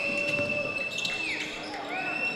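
Basketball game sounds: sneakers squeak on the court in two drawn-out high squeaks, one at the start and one near the end, over the hall's background noise and a ball being dribbled.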